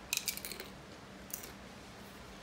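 Crunching bites into a tortilla chip: a quick run of crisp crunches at the start, then one more crunch just over a second in.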